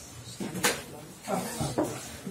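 A single sharp knock about two-thirds of a second in, with a few softer knocks and faint voices around it.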